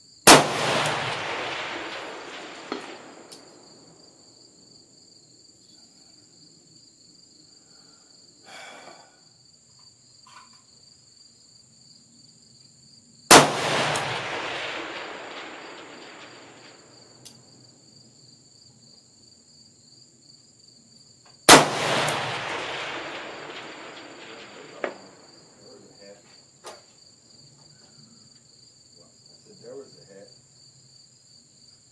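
Three rifle shots from a 6mm ARC AR-15, near the start, about 13 s in and about 22 s in, each with a long rolling echo. Some seconds after each shot comes a faint ping of the bullet hitting a distant steel target. Insects chirp steadily throughout.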